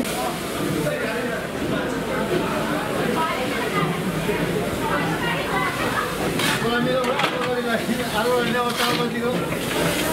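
Crowd chatter around a Darjeeling Himalayan Railway steam locomotive, which is hissing steam, with two short louder hisses in the second half.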